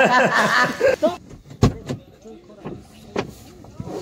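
Men talking, then a sharp knock about one and a half seconds in, followed by a few lighter clicks and knocks inside a car cabin, as a passenger climbs into the front seat.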